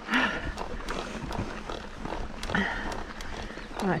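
Mountain bike grinding up a sandy climb: tyres crunching through loose sand with scattered clicks and knocks from the bike. Over it the rider breathes hard, with short voiced grunts of effort.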